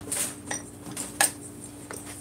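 Light kitchen clatter: a few short knocks and clinks of utensils against cookware, the sharpest about a second in, over a steady low hum.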